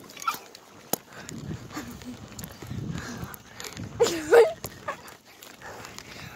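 Bicycle riding fast on pavement: tyre and wind rumble, with a single click about a second in. About four seconds in comes one short, loud, high call that bends in pitch.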